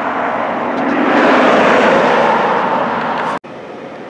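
A road vehicle passing by, its tyre and engine noise swelling to a peak and easing off, then cut off suddenly about three and a half seconds in, leaving quieter steady traffic noise.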